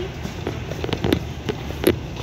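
Metal shopping cart rattling as it is pushed along a hard store floor: irregular clicks and knocks over a steady low rumble, with the sharpest knocks about a second in and near the end.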